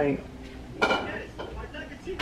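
A sharp clink with a short ring about a second in, followed by a fainter tap: dishes or cutlery being handled.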